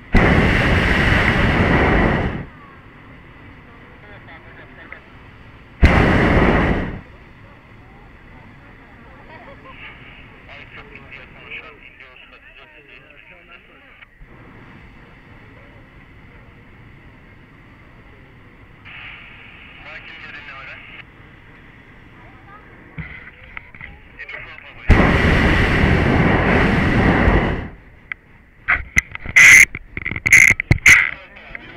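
Hot-air balloon's propane burner firing overhead in three loud blasts: one of about two seconds at the start, a shorter one-second blast around six seconds in, and a longer one of nearly three seconds near the end. Sharp knocks follow just before the end.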